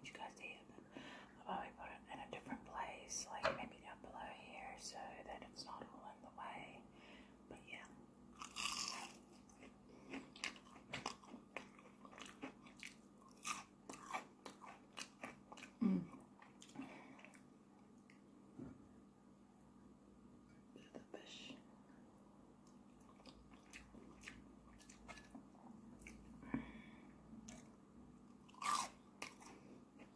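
Close-miked mouth sounds of chewing crispy battered fish and potato wedges: soft chewing with many small clicks and a few sharper crunches, about nine seconds in and near the end, mixed with low talking.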